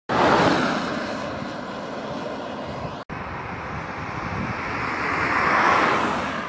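Noise of road vehicles passing: one fading away, then after a short break another getting louder as it approaches near the end.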